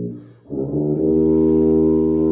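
Bass tuba playing sustained low notes: one held note ends, there is a short break about half a second in, then a new long note is held.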